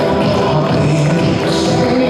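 Music played over a stadium's public-address loudspeakers, a steady run of held notes.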